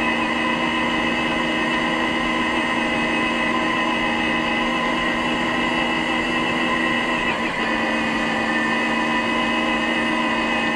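Electric motor and gears of a radio-controlled car whining steadily at an even pitch as it drives, with a brief wobble in pitch about three-quarters of the way in.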